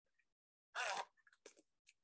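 Resealable plastic zipper bag being pulled open: one short crackling rip of the zip track a little under a second in, followed by a few faint crinkles of the plastic.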